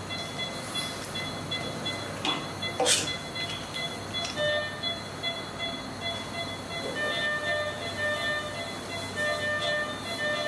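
Operating-room equipment: a steady low hum with thin high electronic whines, and from about halfway a patient monitor beeping repeatedly at one pitch. A couple of short sharp sounds come near the 2- and 3-second marks.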